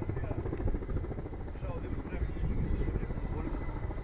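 Firefighting helicopter, heard at a distance, its rotor beating steadily as it flies low over the sea to refill its slung water bucket.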